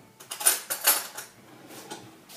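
Metal cutlery clattering as a spoon is fetched: several quick clinks and rattles in the first second, then quiet handling.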